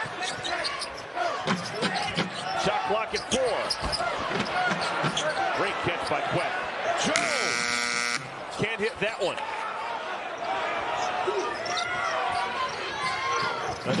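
Arena sound of a college basketball game in play: a ball dribbling on hardwood, sneakers squeaking and crowd noise. About seven seconds in, the shot-clock buzzer sounds for about a second, signalling a shot-clock violation.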